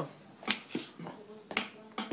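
A sharp electronic percussion hit, snap- or clap-like, repeating in a steady loop about once a second: a drum beat from an iPad music app played through a small Peavey practice amp.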